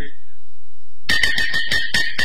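Chinese opera percussion starting about a second in: quick, even strokes, about six a second, with a metallic ring between them.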